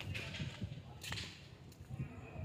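Irregular rumbling handling noise on a handheld phone's microphone as it is carried, with a sharp click about a second in.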